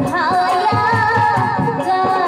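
A woman singing a Bhawaiya folk song into a microphone. Her voice wavers through an ornamented turn, then settles on a held note, over a steady rhythmic beat.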